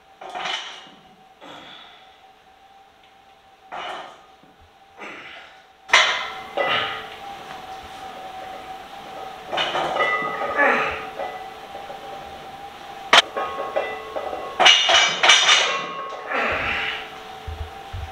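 Loaded cambered barbell set down on and pressed off the steel safety bars of a power rack during pin presses, giving a few separate metal clanks and knocks, the loudest about six seconds in and a sharp one about thirteen seconds in.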